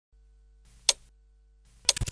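Clock-tick sound effect of a broadcast countdown timer: two sharp ticks about a second apart.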